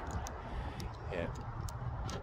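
A low steady rumble with a few faint clicks, and a muttered "yeah" about a second in.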